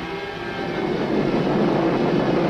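A dense rushing roar from a battle sound effect of aircraft in combat, swelling slightly, over a low steady music drone.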